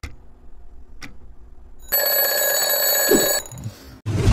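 Twin-bell alarm clock ringing for about a second and a half, starting about two seconds in, then cutting off. A single click comes about a second in.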